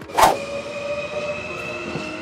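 A sharp clack about a quarter second in, then a French regional TER electric passenger train moving along a station platform: a steady rumble with a high whine held over it.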